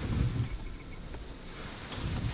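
Faint, steady insect chirping, with a low rumble of wind on the microphone.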